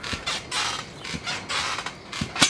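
Trampoline springs and frame creaking in a quick rhythm, about three creaks a second, as a person bounces on the mat.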